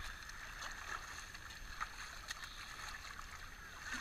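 Feet sloshing through shallow water over rocks, with a few short splashes, over a steady wash of small waves lapping the rocky shore.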